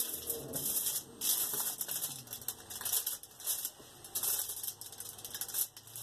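A small metal blade notching polymer clay on an aluminium-foil-covered work surface: irregular light clicks and taps with crinkling of the foil.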